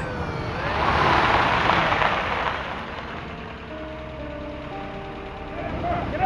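A car speeding by in a police chase, a loud swell of engine and road noise that rises and falls over the first two or three seconds. Then background music holds sustained notes.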